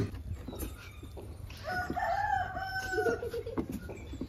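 A rooster crowing once, starting about one and a half seconds in: one long call held at a steady pitch that drops at the end.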